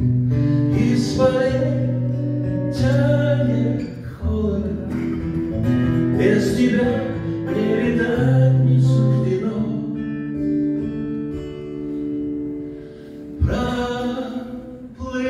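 Live band playing an instrumental passage: acoustic guitar strumming over long held accordion notes and a bass line, with cymbal washes on some chords. A sharp, loud hit comes shortly before the end.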